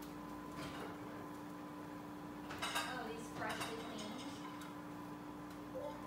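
Dishes and cutlery clinking and clattering in a few short bursts, about a second in and again around two and a half to three and a half seconds in, over a steady low hum.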